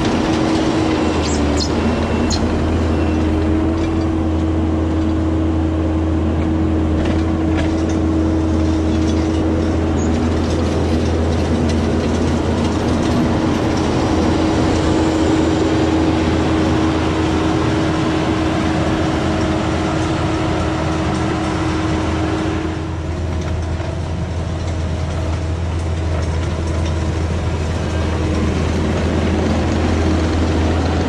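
Kubota SVL75-2 compact track loader's four-cylinder diesel engine running steadily under load as the machine drags a gauge-wheeled grading attachment through the gravel road surface. The engine note holds an even hum, dipping briefly a little over two-thirds of the way through.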